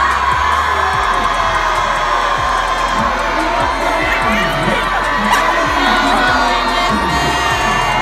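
A large crowd cheering and screaming, with music playing under it.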